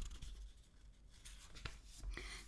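Faint room tone: a low steady hum and soft hiss, with a couple of faint clicks.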